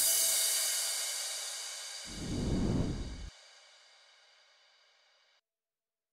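Background music ending on a cymbal crash that rings out and fades over about four seconds. About two seconds in, a short burst of low noise swells and cuts off suddenly.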